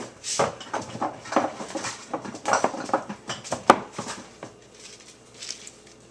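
A quick run of knocks and clatters as containers are moved about out of sight and a plastic jar of oats is fetched, dying down about four and a half seconds in.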